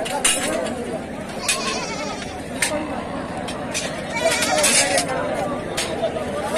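Sheep bleating amid the steady talk of a crowd of men, loudest about four to five seconds in.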